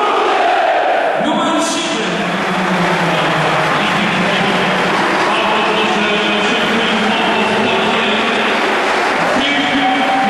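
Large football stadium crowd chanting and cheering loudly: a dense, steady roar of thousands of voices with a sung chant coming through it.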